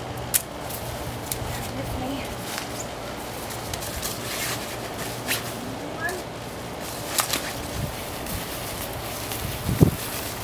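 Dry dead twigs snapping as they are cut with hand pruners: four sharp snaps spread a second or more apart, over a low steady hum. Footsteps on grass come in near the end.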